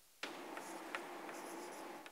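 Chalk writing on a blackboard: a sharp tap as the chalk meets the board about a quarter second in, then scratching strokes with a few light taps, stopping near the end.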